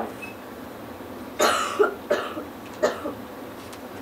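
A person coughing: a short run of coughs, the first and loudest about a second and a half in, with a few weaker ones after it.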